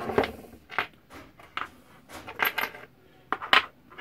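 Small brass and copper scrap parts clinking against each other and the wooden bench as they are picked through by hand. It is a scattered series of light metallic clinks, the sharpest about three and a half seconds in.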